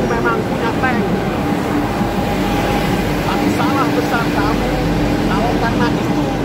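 Steady outdoor street noise with voices of people talking on and off, clearest in the second half.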